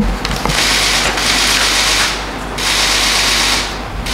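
Sheets of printed paper rustling loudly as pages are turned and shuffled right beside a podium microphone. It comes in two spells, the first nearly two seconds long and the second about a second, with a short break between and a few sharp clicks at the start.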